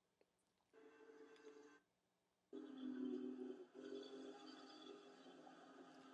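A diesel locomotive's air horn, heard faintly through a TV's speakers: a short blast about a second in, a brief pause, then a longer held blast that carries on more quietly.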